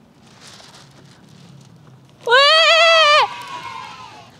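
A single loud, high cry with a quivering, wavering pitch, about a second long, beginning a little over two seconds in after a faint steady outdoor background.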